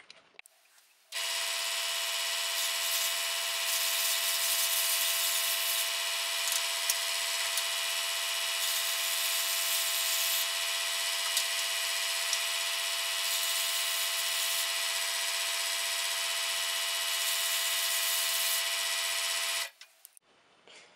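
Electric scroll saw running steadily as it cuts balsa wood booms to length. It starts about a second in and cuts off just before the end.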